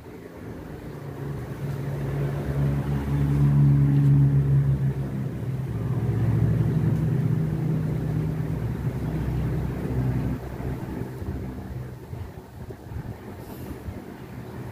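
A low engine drone of a passing vehicle, swelling over the first few seconds and fading away about ten seconds in.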